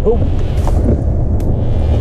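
Ford F-150 pickup heard from inside the cab while driving a rough trail: a steady low engine and road rumble, with a sharp tick about one and a half seconds in.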